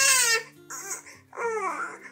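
Baby crying in two short, falling wails, one right at the start and one about a second and a half in: a cranky, fussing infant. Soft background music plays underneath.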